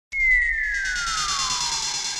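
Electronic synthesizer sweep: a single tone starts suddenly and glides steadily down in pitch, over a bright, shimmering wash of steady high tones.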